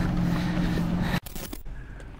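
Car engines running steadily as cars climb a gravel road towards the microphone, a low hum with road noise. It cuts off abruptly a little over a second in, leaving a much quieter outdoor background with a few faint ticks.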